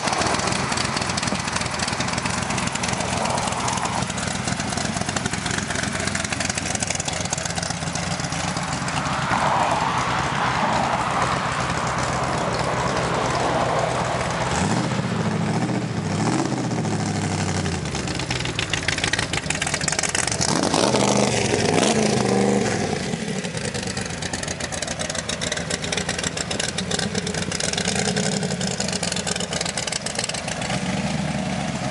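Shelby AC Cobra's V8 running through its side exhaust pipes as the car idles and is driven off and back. The engine note rises and falls a couple of times around the middle, loudest about two-thirds in.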